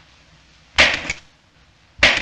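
Slapstick hit sound effect from a clay fight: a sudden wet smack about a second in, with a second smaller smack right after it. Another hit begins just at the end.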